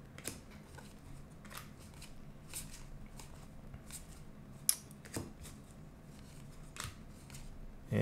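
Trading cards being slid one at a time from the front to the back of a hand-held stack: faint papery flicks and rustles, with one sharper click about four and a half seconds in.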